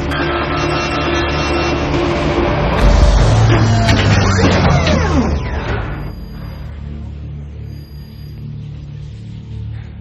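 Dramatic, tense film score layered with sound effects: a deep boom about three seconds in and a cluster of swooping rising and falling glides. After about six seconds it drops to a quieter, sustained music bed.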